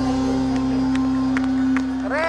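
Live band music sustaining one long, steady held note.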